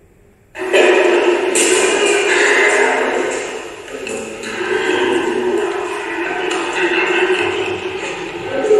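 Audio of a recorded theatre-production clip playing over the hall's loudspeakers, cutting in suddenly about half a second in: a dense, steady mix of voices and music.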